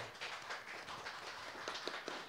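Audience applauding: a steady, fairly faint patter of many hand claps.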